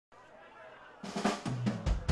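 A faint hum for about a second, then a drum kit fill of snare strikes opens the band's song. A low sustained note comes in halfway through, and a heavy kick drum hit lands right at the end.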